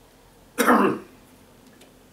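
A man coughs once to clear his throat: a single short, harsh burst a little over half a second in.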